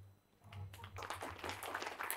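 Audience applauding, starting about half a second in and building as more hands join.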